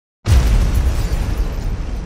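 Cinematic explosion sound effect: a sudden deep boom about a quarter second in, followed by a rumble that slowly dies away.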